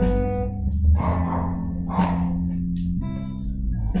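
Squier Stratocaster-style electric guitar strumming chords, a new chord about once a second, each left to ring.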